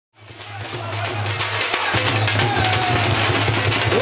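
Live bhangra music fading in: dhol drums beating fast strokes over a steady, deep bass line from the DJ's sound system.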